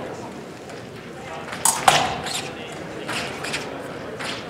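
Sharp clicks and knocks from an épée bout, the two loudest close together about a second and a half in, with a few lighter ones after, over voices in a large hall.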